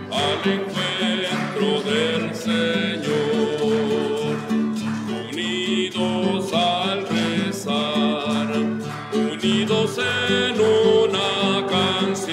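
Entrance hymn: a singing voice with acoustic guitar accompaniment, played continuously.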